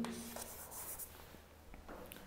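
Chalk writing on a blackboard: faint scratchy strokes, busiest in the first second, then a few light taps.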